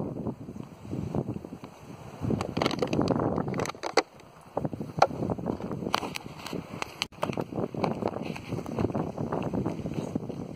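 Wind buffeting the microphone in uneven gusts, with a few sharp clicks scattered through it.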